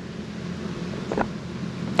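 Steady rushing background noise, with a brief tick a little after a second in.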